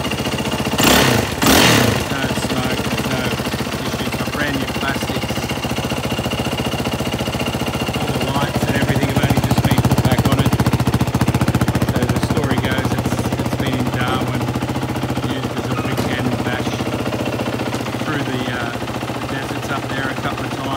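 Yamaha WR450F single-cylinder four-stroke engine idling steadily, with two short loud bursts about a second in; the idle grows louder for a few seconds midway.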